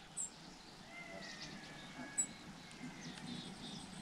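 Quiet outdoor ambience with faint, thin bird chirps and a soft high call in the middle, and a couple of small clicks.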